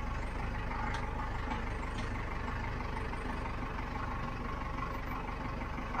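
Bread truck (step van) engine running steadily as the truck drives over rough dirt ground, heard from inside the cab, with a couple of faint clicks about one and two seconds in.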